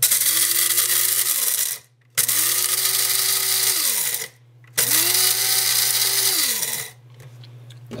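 Krups F203 electric blade grinder grinding whole coffee beans in three presses of about two seconds each. Each time the motor spins up, runs steadily, and winds down with a falling tone when released.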